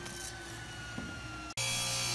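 Grizzly table saw: a quiet stretch with a faint whine slowly dropping in pitch, then about one and a half seconds in an abrupt change to the saw's motor and blade running steadily and louder, with a strong low hum, as a thin strip is fed toward the blade.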